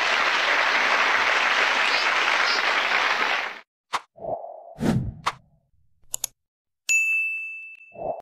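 Studio audience applause that stops abruptly about three and a half seconds in. It is followed by a few short sound-effect clicks and a thump, then a bright ding that rings on as one high tone and fades.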